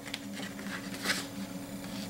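Faint, brief rustles of a sheet of black card or paper being handled, strongest about a second in, over a steady low electrical hum.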